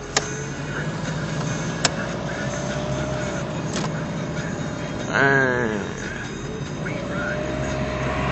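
Steady road and engine noise inside a moving car. Two sharp clicks come in the first two seconds, and a brief voice sound about five seconds in.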